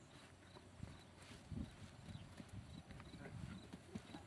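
Faint hoofbeats of a horse cantering on a sand arena, soft irregular thuds.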